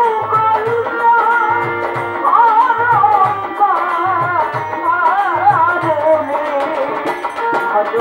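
A woman singing a Bangla Baul folk song, her voice gliding and wavering through ornamented phrases, over a steady beat of low drum strokes.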